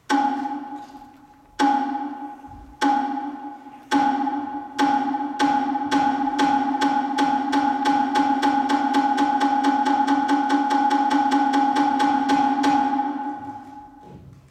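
Wooden clappers struck in a series that starts slow, speeds up into a fast roll, and dies away near the end, each strike ringing with a clear pitch. It is the accelerating clapper cue that traditionally opens a Japanese stage dance.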